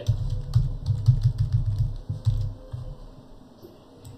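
Typing on a computer keyboard: a quick run of keystrokes that stops about two and a half seconds in.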